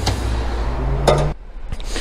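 Fuel pump nozzle hung back in its holder on the petrol pump: a short hard clink, then another click about a second later, over a steady low hum that drops away suddenly just after that.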